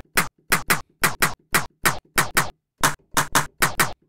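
A short percussive 'mouse hit' sample triggered over and over in the Native Instruments Battery sampler, about three to four hits a second. A pitch envelope gives each hit a sharp attack and a quick downward pitch sweep, making a laser-like zap. The length of the sweep shifts slightly as the envelope's decay is adjusted.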